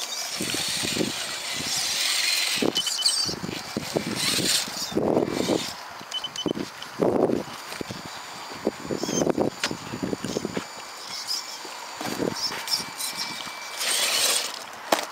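Electric motor and gears of a radio-controlled rock crawler whining as it drives over grass and climbs rocks, with a few sharp knocks.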